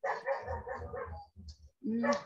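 A dog barking, several barks in quick succession in about the first second, heard through a video call's compressed audio.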